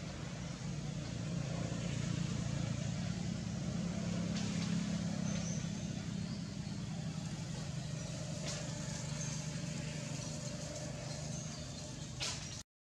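Low, steady engine hum of a motor vehicle running nearby, swelling about a second or two in and easing slightly after the middle.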